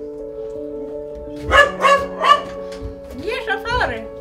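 A dog barks three times in quick succession over soft background music. A brief voice follows near the end.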